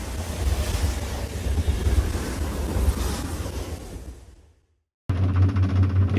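Steady rushing noise with a deep rumble, like wind or surf, fading out about four and a half seconds in. After a brief silence a steady low hum begins.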